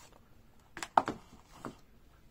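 A few short knocks and clicks, the loudest about a second in, from firework packaging being handled and set down.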